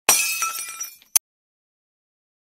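Breaking-glass sound effect: a sudden crash with ringing, tinkling pieces that dies away within about a second, then one short, sharp click.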